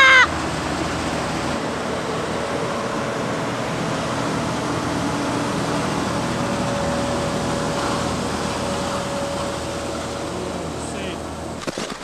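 Engine of a small snow-clearing machine running steadily close by, a low hum under a constant rushing noise. A short high-pitched shout at the very start.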